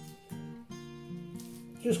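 Short acoustic guitar music, a few plucked and strummed chords, played over a cut, with a man's voice starting to speak near the end.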